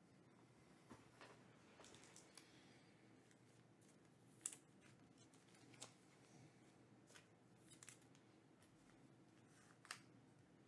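Near silence with faint, scattered clicks and rustles of trading cards being handled; the sharpest click comes about four and a half seconds in and another just before the end.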